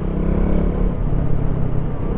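KTM Duke 200's single-cylinder engine running at a steady cruise, with wind rushing over the helmet-mounted microphone.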